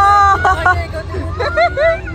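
Long, drawn-out wavering vocal calls, one at the start and more in the second half, over crowd babble and a steady low rumble.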